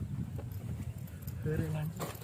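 Faint scuffs and knocks of a person climbing down into a narrow rock crevice, over a low rumble, with a short voice sound near the end.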